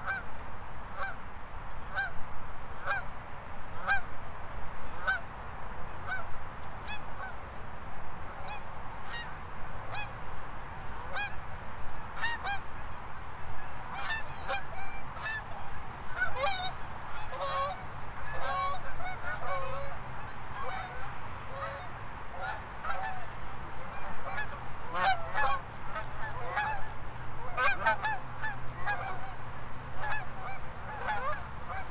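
Birds calling: short repeated calls, about one a second at first, building about halfway through into many overlapping calls from several birds.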